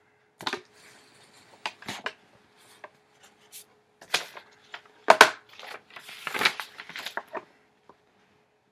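Handling noise from a handheld recording device being picked up and turned around: irregular clicks, knocks and rustling, the loudest knock about five seconds in, over a faint steady hum.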